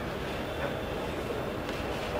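Steady low rumble of background noise, with faint rustling of a printed dress fabric as it is unfolded and lifted.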